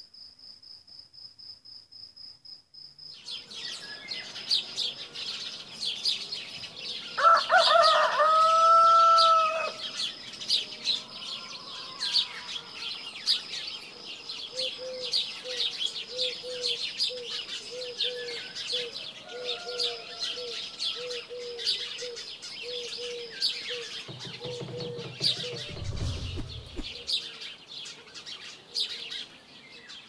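Crickets chirping in a steady pulsing trill for the first few seconds, then a dense chorus of chirping songbirds, with a rooster crowing about seven seconds in, the loudest sound. Later a lower call repeats about twice a second for several seconds, and a short low rumble comes near the end.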